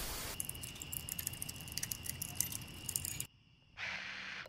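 Old-film countdown sound effect: hiss with dense, irregular crackling clicks, like a worn film reel running through a projector, over a faint steady high tone. It cuts off suddenly about three seconds in, and a short hiss follows just before the end.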